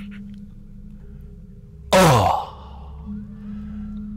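A man's loud drawn-out vocal exclamation, about two seconds in, falling steeply in pitch like a long sigh, over a low steady hum.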